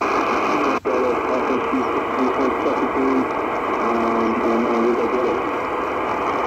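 AM broadcast played through the small built-in speaker of a Qodosen DX-286 portable radio: a voice amid steady hiss and static. The audio drops out briefly at the very start and again about a second in as the tuning steps to the next channel.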